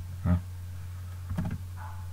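Steady low electrical hum on the recording, with one short spoken word a quarter second in.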